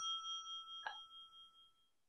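A bell-like ding sound effect, several clear tones ringing out and fading away over about a second and a half, marking the on-screen compliment counter ticking up. A short faint sound comes a little under a second in.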